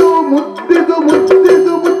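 Yakshagana ensemble music: sharp chende and maddale drum strokes over a steady held drone.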